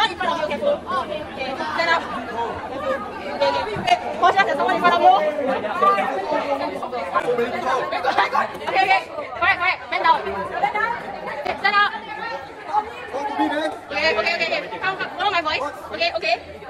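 Overlapping chatter of a group of young people talking and calling out over one another, with no single clear voice.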